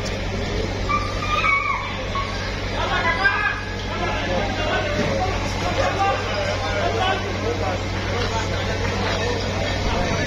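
Crowd of people talking and calling out over one another, over a steady low rumble from a diesel excavator's engine running.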